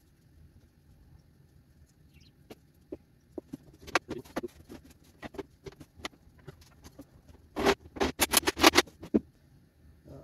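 Cedar boards and clamps handled during a glue-up: scattered light knocks and clicks, then a quick run of about a dozen loud clacks near the end.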